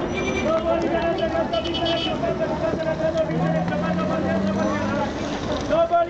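Busy city street: many voices talking over one another, with a vehicle engine rising in pitch for a couple of seconds about three seconds in as minibus traffic passes.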